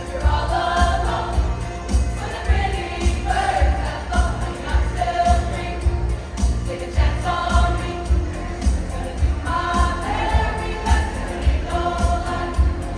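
A large student choir singing together in sung phrases over a steady, heavy low beat.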